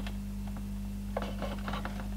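A few faint clicks and taps as the plastic calculator case and its power-supply section are handled, over a steady low mains hum.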